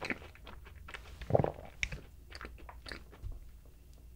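Close-miked chewing of chocolate cake: a run of short, moist mouth clicks and smacks, with one louder, lower sound about a second and a half in.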